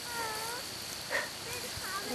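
German shepherd puppy whining: a short high whine just after the start, a brief sharp sound about a second in, and faint short squeaks near the end.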